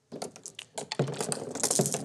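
A few marbles clattering down a cardboard marble track, with a rapid run of clicks and ticks as they bounce off the glued-on popsicle sticks.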